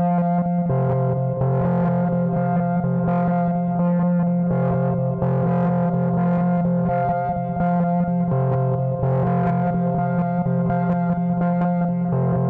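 The opening of a deep electronic remix: sustained, distorted chords over a bass that moves between two notes, with no kick drum.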